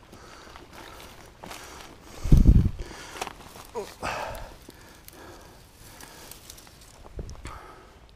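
Footsteps through long dry grass along a bank, with a loud, low thump about two seconds in.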